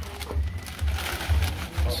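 Faint background voices and music over a steady low rumble, with a short rustle about a second in as a plastic packet of chow mein noodles is emptied into a wok of boiling water.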